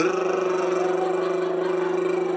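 Ceiling fan whirring: a steady motor hum with a fast, even flutter, starting abruptly.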